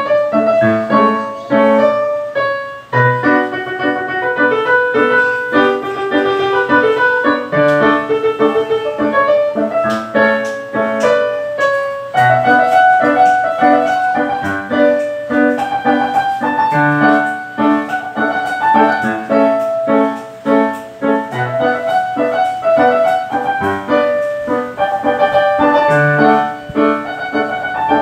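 Piano music playing continuously: a melody over chords, with low bass notes returning every few seconds.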